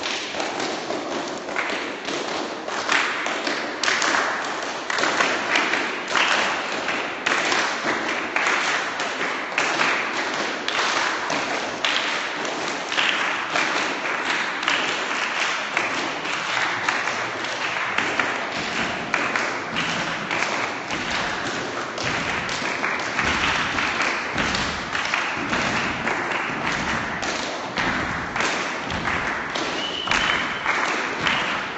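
A group of people walking together on a hard floor while clapping their hands, a dense continuous patter of claps and footsteps. From about halfway the footfalls turn into heavier stamping thuds.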